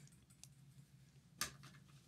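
Small plastic building pieces being handled and pressed together: faint ticking clicks, with one sharper snap about one and a half seconds in.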